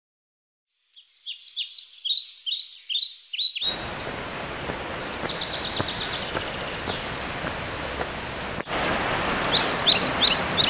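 Birds chirping in quick repeated short notes after about a second of silence; from about three and a half seconds in a steady rushing noise cuts in, the roar of a waterfall, with the birds still chirping over it.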